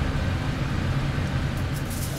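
Steady low drone of a ship's engines and machinery heard inside the galley, an even hum with no break.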